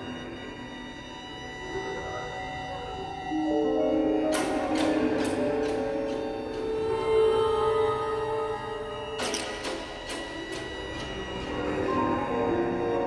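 Tense orchestral horror film score built on held notes. Clusters of sharp percussive hits come in suddenly about four seconds in and again about nine seconds in.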